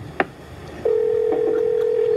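A sharp click as the phone line is hung up, then a steady telephone dial tone starting just under a second in.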